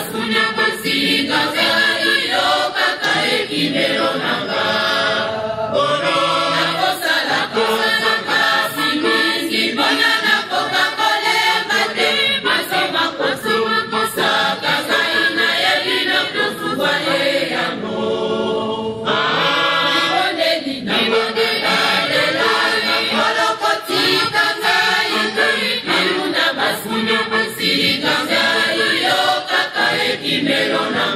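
Mixed choir of men's and women's voices singing in harmony, with a short break between phrases about eighteen seconds in.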